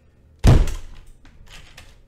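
A single heavy thump about half a second in, dying away over half a second, followed by a few faint small knocks.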